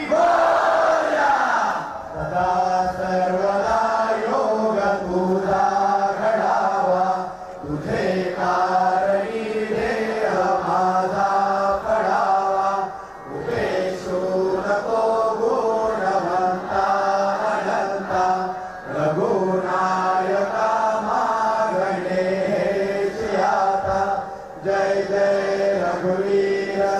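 Hindu devotional chanting by voices in a steady, sung recitation. It comes in phrases of about five to six seconds, with a short breath-gap between each.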